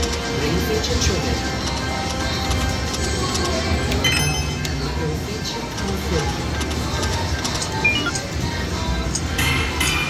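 Volcanic Fire Rock video slot machine playing its electronic music and clinking chime sounds as the reels spin.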